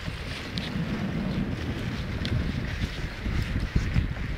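Wind buffeting the microphone of a moving camera: an irregular, gusting low rumble with a hiss above it and a few faint ticks, and a sharper knock near the end.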